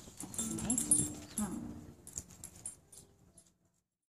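A dog being held and patted makes low, whining groans that bend up and down, with rustling from handling; it fades out a little after three seconds in.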